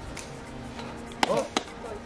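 A man's voice calls "Go" about a second in, between two sharp knocks, over a low, steady outdoor background.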